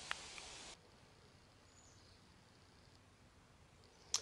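Near silence: faint background noise with one small click at the start, cut off abruptly under a second in, then dead silence.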